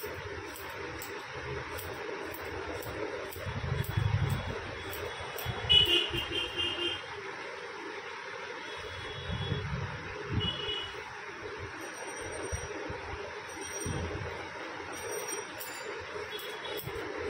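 Traffic noise from the street: low engine rumbles swell up a few times, with several short horn toots. Faint sharp ticks near the start and end fit scissors snipping hair.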